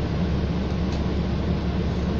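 Steady cabin noise inside a New Flyer XD40 diesel transit bus: an even low engine drone with a hiss over it, unchanging throughout.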